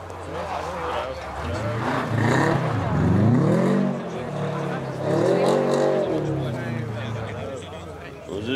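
Rally car engine revving hard as the car slides through a corner on snow, the pitch climbing and dropping twice.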